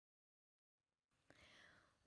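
Near silence, with a faint click past the middle and then a soft, faint hiss, just before a voice begins.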